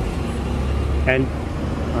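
A steady low background rumble, with no clear clicks or other events over it.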